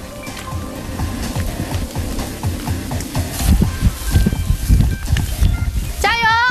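Flames of a burning fire-ring tunnel rumbling, an uneven low rumble that grows stronger in the second half, under background music.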